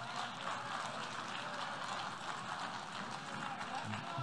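Audience applauding in a large assembly hall: a steady, even patter of many hands clapping, picked up at a distance by the podium microphones. It interrupts the speech, and the speaker then repeats his sentence.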